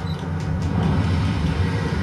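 Steady low rumble of a fishing boat's engine and the sea, played back through a television's speaker.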